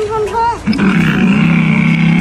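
Engine sound effect from a child's electric mini motorcycle: a steady low rumble that starts under a second in, holds for about a second and a half, then cuts off suddenly. A brief high voice comes just before it.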